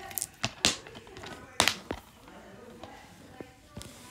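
Sharp plastic clicks and taps of a DVD case being handled, several in quick succession early on and the loudest about one and a half seconds in.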